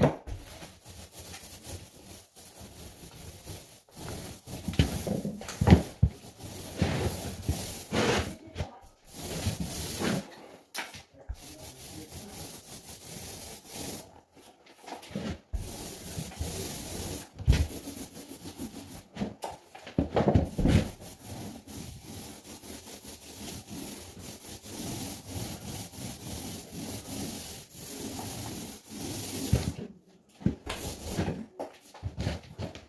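Paint roller on an extension pole being rolled over a wall in irregular back-and-forth strokes, with short pauses and a few louder knocks.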